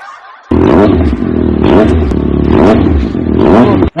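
Motorcycle engine revving in repeated surges, rising and falling in pitch about once a second. It starts suddenly about half a second in and cuts off just before the end. Here it is a comic sound effect for a person being shifted into 'gear'.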